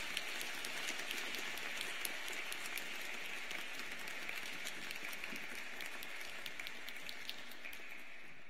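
Audience applauding: steady clapping that thins out near the end.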